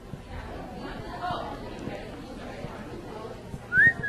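Low background chatter of people in a lecture hall. Near the end someone whistles a short rising note.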